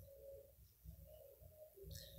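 Near silence: faint room tone with a bird cooing in the background, several short low notes.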